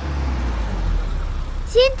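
A car engine running with a steady low hum as the car rolls up to a stop.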